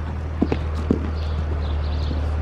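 A horse's hooves landing from a small jump and cantering on the sand footing of an indoor arena: a few short, dull thuds about half a second and a second in, over a steady low hum.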